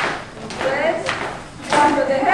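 Voices in a large hall, with three sharp thuds about a second apart.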